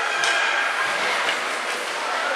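Skate blades scraping and hissing on the ice of a hockey rink, a steady rush of sound with a few high held tones, and a sharp clack shortly after the start.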